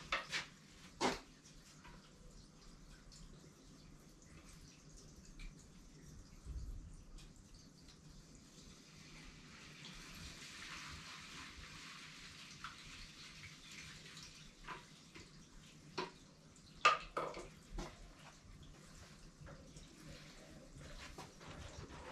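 Quiet room with a few scattered clicks and knocks from objects being handled, and a soft hiss for a few seconds midway.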